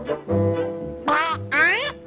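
Orchestral cartoon score, with two short bursts of a Disney cartoon duck's quacking voice about a second in.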